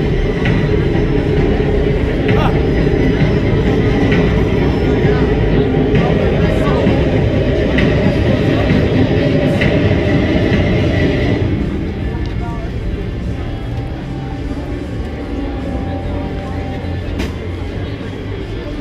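Scarezone soundtrack playing over loudspeakers: music and voices over a heavy low rumble, dropping in level about twelve seconds in.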